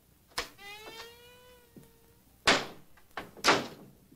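A door being opened: a latch clicks, the hinge gives a long squeak that rises slightly, then come two loud, short scuffing knocks about a second apart.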